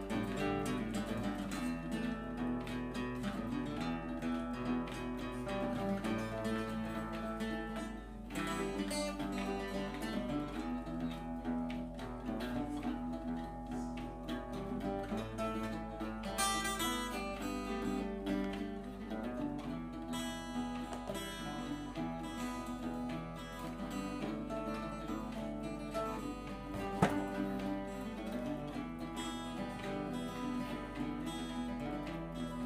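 Two acoustic guitars playing together, picked notes and chords in a continuous flowing pattern. One sharp click stands out near the end.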